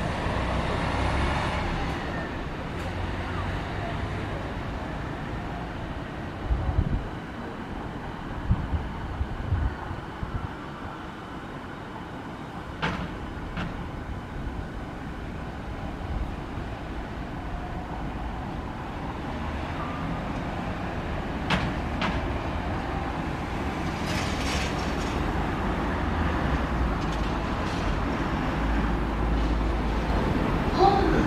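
JR East E217-series electric train pulling out and receding, its running rumble fading over the first ten seconds or so. A few sharp clicks follow, and a rumble grows again toward the end.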